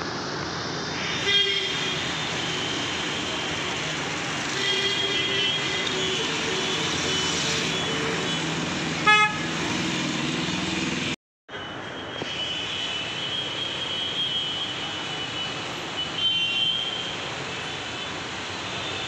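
Street traffic with vehicle horns honking over a steady traffic noise. Two short, loud horn blasts come about a second and a half in and about nine seconds in, and shorter toots follow later.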